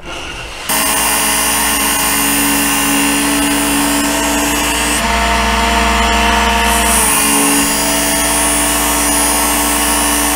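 Work Sharp electric belt knife sharpener switched on less than a second in, its motor and abrasive belt running steadily. Its pitch shifts between about five and seven seconds in, as a knife blade is drawn through the guide against the belt.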